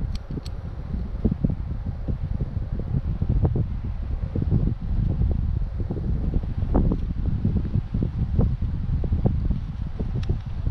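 Wind rumbling on the microphone, with repeated short scrapes and crunches of gloved hands digging in dirt and dead leaves.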